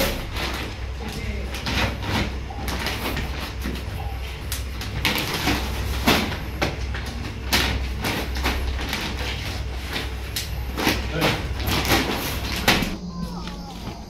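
Plastic bags crinkling and rustling, with dry soybeans shifting and pouring as they are scooped and packed into bags, over a steady low hum. The rustling stops suddenly near the end.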